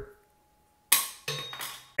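A short dead-silent gap, then about a second in a single sharp clack of a hard plastic figure base plate being set down on a hard surface, dying away quickly, followed by softer handling sounds.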